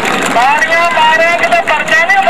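A man's voice calling out in long, drawn-out tones, starting about half a second in, over the steady noise of a large crowd.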